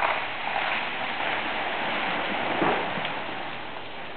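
A noisy crackling hiss of ice in ice-coated tree branches during an ice storm. It is loudest in the first three seconds, then fades.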